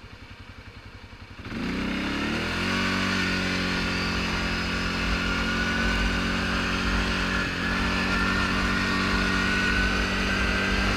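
ATV engine running at low revs, then opening up about a second and a half in, its pitch rising for about a second as the quad accelerates and then holding steady at cruising speed.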